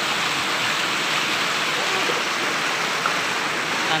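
Fast, shallow river running over rocks in white-water rapids: a steady rush of water.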